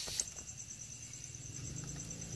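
A cricket chirping in a steady, rapidly pulsing high trill, with a short click at the start.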